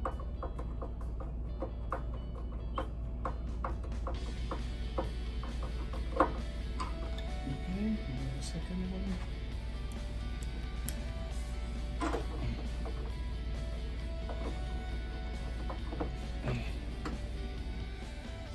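Background music with a steady low hum. In the first few seconds a hand screwdriver clicks rapidly as screws are driven into the treadmill's metal frame. A few single knocks follow later.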